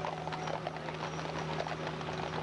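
Hooves of a team of Clydesdale horses clopping on pavement as they pull a wagon, many overlapping strikes in an uneven patter, over a steady low hum.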